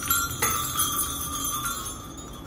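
Strings of small multicolour hanging bells shaken by hand, several bells striking together near the start and again about half a second in, then ringing on in high, overlapping tones that slowly die away.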